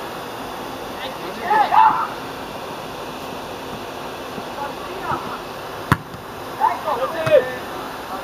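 Football players shouting on the pitch, with a single sharp thud of the ball being kicked about six seconds in, over a steady background hiss.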